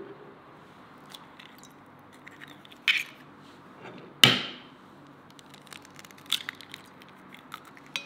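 An egg knocked twice against the rim of a glazed ceramic bowl, the second knock the loudest, with a short ring. Then come small clicks and crackles as the eggshell is pulled apart over the bowl.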